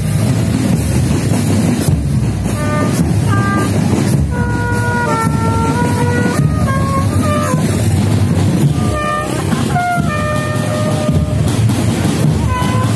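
Marching drum band playing loudly: drums keep up a steady beat, and from a few seconds in brass horns play a tune of held notes that step up and down.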